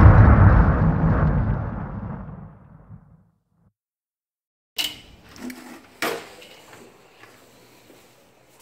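An explosion sound effect, a deep boom fading away over about three seconds, followed by silence. A few light knocks and clicks come near the end.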